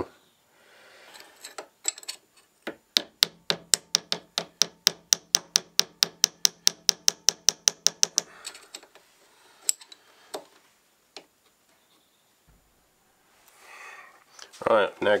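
Rapid light taps of a brass hammer on a workpiece held in a lathe's four-jaw chuck, about five a second for some five seconds, then a few single taps: the work being tapped over to true it in the chuck.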